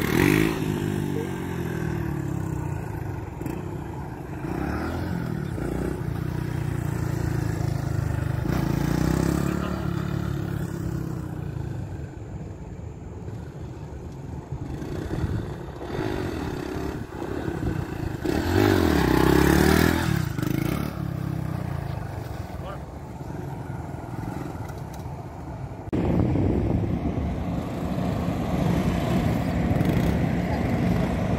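Small motorcycle engine revving up and down in repeated surges as it rides past, loudest about two-thirds of the way through; near the end the sound changes abruptly to a louder, steadier engine.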